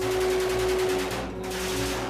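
Rapid rifle fire in close succession, a fast even run of shots that breaks off briefly just past the middle and then resumes, under a faint steady music bed.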